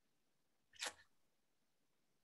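Near silence over a video-call line, broken once about a second in by a short, sharp breath noise from a person.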